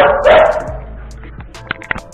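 A dog barks loudly, twice in quick succession, over background music, followed by a couple of light clicks near the end.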